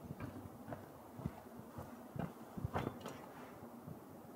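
A few soft footsteps on dirt and knocks from a folding camp chair as a person sits down in it, the loudest knocks a little after halfway.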